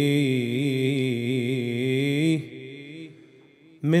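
A man chanting Arabic devotional recitation: a long held note with wavering pitch that breaks off a little over two seconds in, a short pause, then the chant starts again just before the end.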